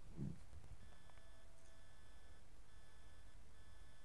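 Faint electronic beeping: a short thin tone repeats about once a second, four times, over a low steady hum.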